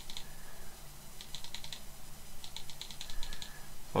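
Computer mouse clicking in two quick runs of about six clicks each, stepping a spin box's value up and down.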